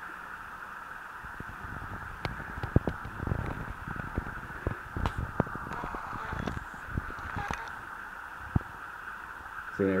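Ford 300 inline-six short block being turned over by hand: scattered, irregular clicks and knocks from the crank, rods and tools, over a steady background hiss.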